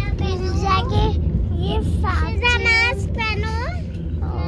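A young girl singing in a high, childish voice, over the steady low rumble of the train she is riding.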